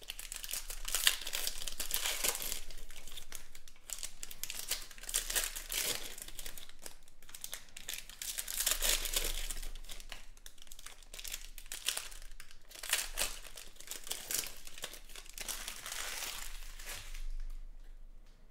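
Foil wrappers of Panini Prizm football card packs crinkling as the packs are pulled open by hand and the cards slid out, in several rustling spells of a second or two each.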